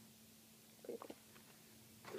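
Near silence: room tone with a faint steady hum, broken by a brief soft sound about a second in.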